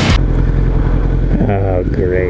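Steady low rumble of a sport motorcycle's engine and wind at a handlebar or helmet microphone while riding on the highway, just after loud rock music cuts off suddenly at the very start.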